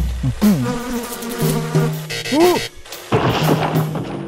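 A string of cartoon sound effects over an animated interlude. A low thump opens it, followed by buzzing, short sliding tones and a swelling whoosh near the end.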